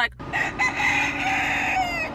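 Rooster crowing: one long cock-a-doodle-doo that falls in pitch at the end.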